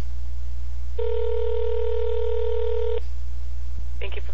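Telephone ringback tone heard down a phone line: one steady two-second ring while the called number rings, over a constant low hum on the line. A short click comes near the end as the call is picked up.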